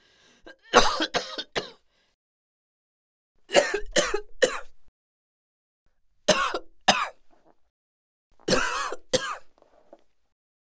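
A person coughing in four short fits of two to four harsh coughs each, with a pause of a second or two between fits.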